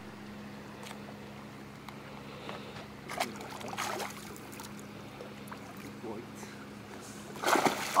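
A hooked fish splashing and thrashing at the water's surface beside a boat as it is played on a spinning rod, loudest about three to four seconds in, over a steady low hum.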